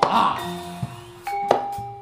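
Live gamelan accompaniment for jaranan dance: bronze gongs and pot-gong metallophones struck a few times, each stroke leaving a clear ringing tone that slowly fades.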